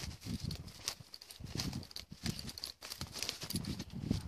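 Footsteps and rustling through dry leaf litter and bramble undergrowth, with irregular crackles and snaps of twigs and leaves and dull thuds every second or so.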